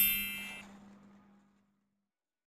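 A ringing metallic chime from an outro sound effect, fading out within the first second.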